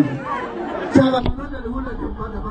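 People talking, with speech and chatter. A short sharp click comes a little over a second in, and a steady low hum runs under the voices after it.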